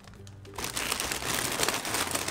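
Plastic chip packets and a shiny laminated tote bag crinkling as a hand rummages to the bottom of the bag. The crinkling starts about half a second in.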